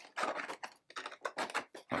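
Clear plastic miniature tray pressed down and shifted into a cardboard game box: a quick run of short plastic scrapes and clicks.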